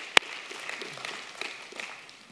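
One sharp hand clap close to the microphone just after the start, then faint applause from the congregation that slowly fades.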